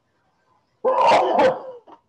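A dog barking loudly, about a second in, followed by a few shorter, fainter barks, picked up through a video-call microphone.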